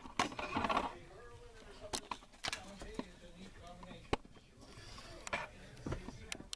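Handling noise from a handheld camera being moved in close, with several short sharp clicks and taps scattered through.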